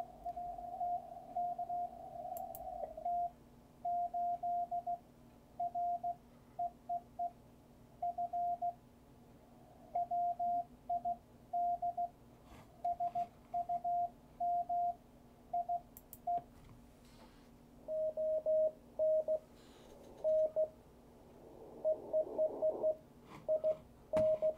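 Morse code (CW) signal heard through an amateur radio receiver on the 20-meter band: a single beep keyed on and off in dots and dashes. From about two thirds of the way in, a different station's keying comes through at a slightly lower pitch.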